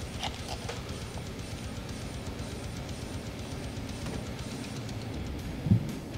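Background music with a steady low beat. In the first second a few light clicks as the lid and contents of a plastic supplement tub are handled, and a short low sound near the end.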